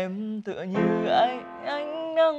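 Upright piano playing a slow song melody while a man sings along, his voice wavering on a held note about a second in.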